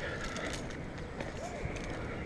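Rope-climbing noise from an SRT ascent: rustling and frequent small clicks and knocks of rope, hardware and gloved hands against the bark, with the climber's breathing close to the microphone.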